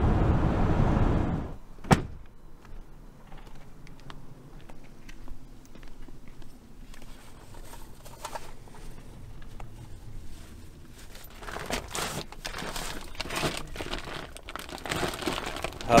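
Steady road and engine noise inside a moving van's cabin, which stops abruptly about a second and a half in. A sharp click follows, then quieter scattered rustling and handling knocks that grow busier near the end.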